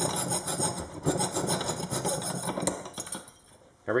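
Thin-bladed hand frame saw cutting a switch opening in a small project box: rapid back-and-forth rasping strokes that fade out shortly before the end.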